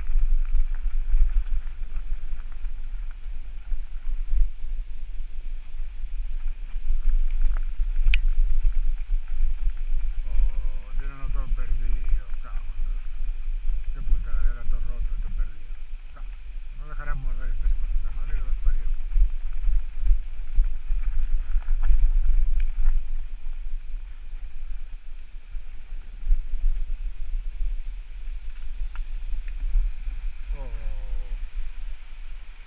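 Mountain bike riding down a dirt and gravel trail, heard as a steady low rumble of wind and ride vibration on the bike-mounted camera's microphone. A few brief voices come in about a third and halfway through.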